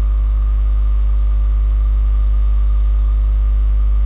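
Steady, loud electrical mains hum in the recording: a deep, unchanging buzz with several steady overtones, and no other sound.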